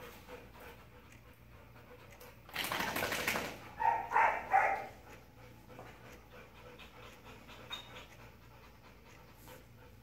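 A dog panting after rough play, with a burst of heavy breathing about two and a half seconds in, followed by three short, pitched dog vocal sounds.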